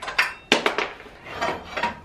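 Metal parts clinking and scraping as a motorcycle's rear-wheel axle is worked through the hub and swingarm. There are a few sharp knocks in the first half second, then shorter rubbing and scraping noises.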